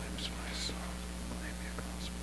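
A man whispering a prayer under his breath, with a few soft hissed s-sounds in the first second, over a steady low electrical hum.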